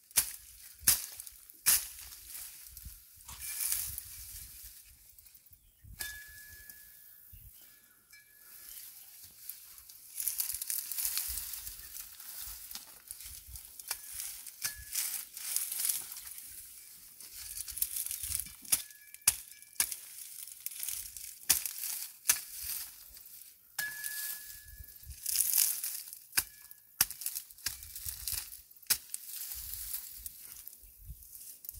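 Dry, dead asparagus ferns and weeds rustling and crackling as they are pulled up and broken by hand, with many sharp snaps of brittle stalks.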